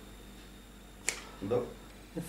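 A single short, sharp click about a second in.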